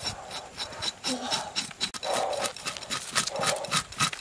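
A knife sawing and scraping through a crocodile's scaly hide, in rasping strokes about once a second with sharp clicks between them.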